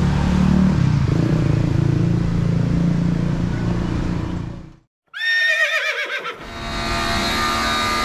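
Road traffic with vehicle engines running for about four and a half seconds, then cut off. After a brief silence there is a short sound that wavers up and down in pitch, and then the steady motor whine of a pressure washer spraying the car.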